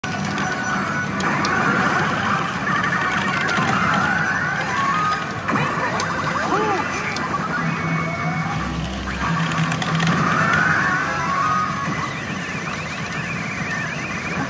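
Pachinko machine's game audio during a jackpot sequence: electronic music layered with sound effects and voice lines from the machine's speakers.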